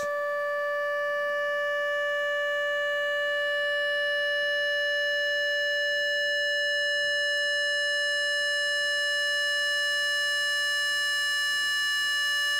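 Steady synthesizer tone from a sine wave fed through a Lockhart wavefolder (Ken Stone CGS52) as its fold knob is turned up. The pitch holds while the tone grows gradually brighter and a little louder as the folding adds overtones.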